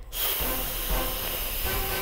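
A steady high hiss comes in suddenly and holds, with faint sustained background music under it.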